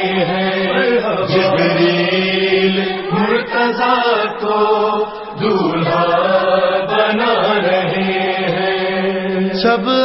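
Voices chanting a sustained, melodic refrain of an Urdu manqabat (devotional praise song) over a steady low drone, with no clear words.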